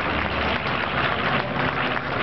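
Twin radial engines of a B-25 Mitchell bomber droning steadily overhead, mixed with a noisy crowd and some clapping.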